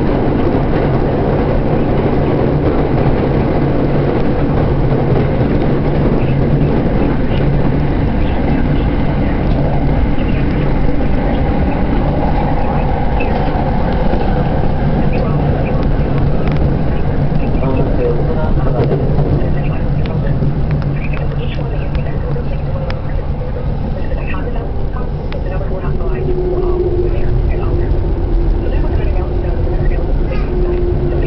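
Electric commuter train running, heard from inside the carriage: a loud, steady rumble with a low hum. Near the end a steady whine comes in as the train pulls into a station.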